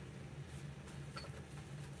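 Quiet room tone with a steady low hum and a faint click about a second in.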